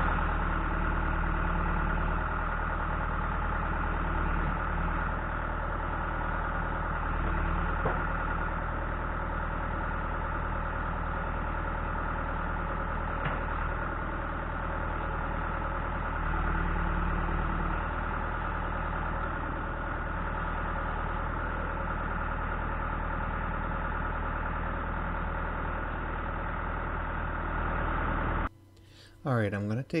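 John Deere 310SG backhoe's diesel engine running steadily while the hydraulics work the boom and the homemade hydraulic thumb, its note shifting slightly a few times under load. The engine sound cuts off suddenly near the end.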